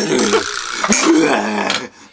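A man's voice letting out long wordless, strained groans in reaction to the burning heat of an extremely spicy curry potato chip he has just eaten. A sharp knock sounds about a second in.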